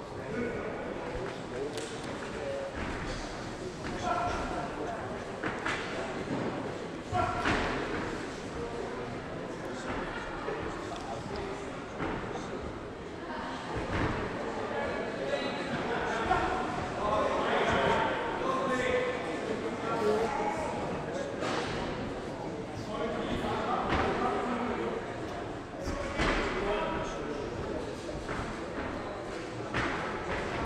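Ringside sound of a boxing bout in a large hall: scattered thuds of gloved punches and footwork on the ring canvas, over a steady bed of indistinct crowd and corner voices.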